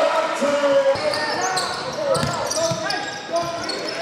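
Live basketball game sounds in a gymnasium: a basketball bouncing on the hardwood floor and players' footfalls, under a steady mix of indistinct voices and shouts from players and spectators.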